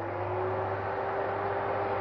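Portable induction cooker just switched on: its cooling fan whirs, settling to a steady level in the first half-second, over a low steady electrical hum and a faint steady tone.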